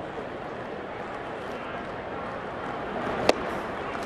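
Steady ballpark crowd murmur, then about three seconds in a single sharp pop as a sinking fastball smacks into the catcher's mitt on a swinging strike.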